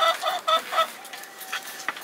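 A chicken clucking in a quick run of short calls, about six a second, that stops a little under a second in.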